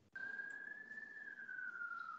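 A faint single whistle-like tone, held steady and then slowly falling in pitch, over a low hiss.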